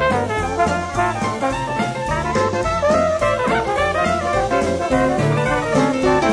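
Dixieland jazz band playing an instrumental passage, with horns leading over a drum kit and a moving bass line.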